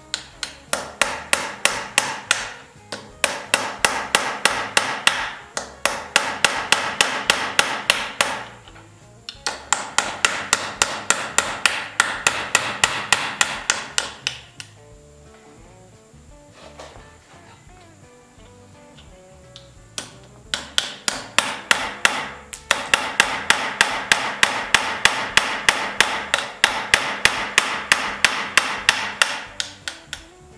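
Rapid light hammer taps on a small chisel, about five a second, chipping auto body filler out of a split in a wooden buggy-wheel felloe. The taps come in runs of a few seconds, with a longer pause about halfway through.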